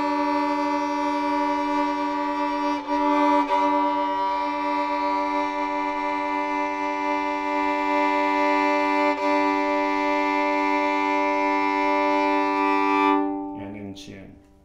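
Violin's open G and D strings bowed together as a sustained double stop, with a few brief breaks at bow changes, stopping about a second before the end. The G starts very out of tune against the D, so the interval wavers in a beat while it is brought toward a calm, in-tune fifth.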